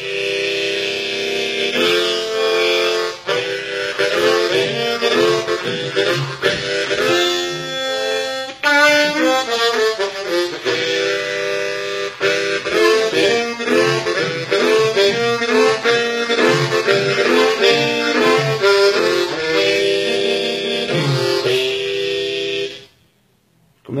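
Hohner Marine Band Thunderbird harmonica in low low F, cupped in the hands and played in blues phrases with chords, its sound deep and very, very mean. Notes bend about eight to ten seconds in, and the playing stops about a second before the end.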